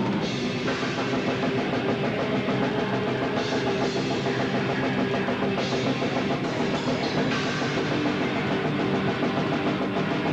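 Black/death metal band playing live, with the drum kit close and loudest: fast, dense drumming with cymbals and bass drum over distorted guitars and bass, without a break.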